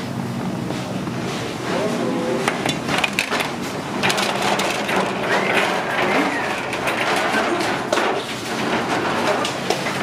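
Bakery work noise: repeated clatter and knocks of metal sheet pans and racks being handled, over a steady low machinery hum.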